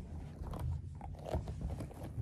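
Plush toys handled and rubbed close to the microphone: soft fabric rustling and scraping with a few small clicks over a low handling rumble.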